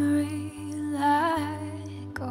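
Female voice singing long held notes, with vibrato on a higher note about a second in, over a sustained acoustic guitar chord.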